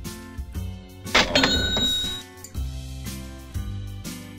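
A cash-register "ka-ching" sound effect about a second in, its bell ringing for about a second, over background music.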